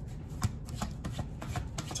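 A tarot deck being shuffled by hand off-camera: a run of light, irregular clicks of cards striking one another, over a low steady hum.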